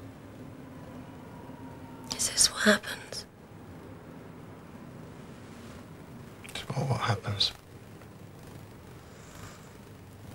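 Hushed, whispered speech in two short stretches, about two seconds in and about seven seconds in, over a faint steady background.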